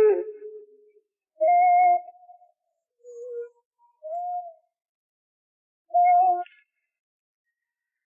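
Isolated singing voice with the backing music removed: a held note fading out in the first second, then four short wordless high notes a second or two apart, the middle two quieter, with silence between them.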